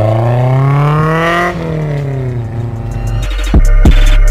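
Honda S2000's inline-four engine revving up steadily for about a second and a half, then easing off, its pitch falling away. Background music comes back in near the end.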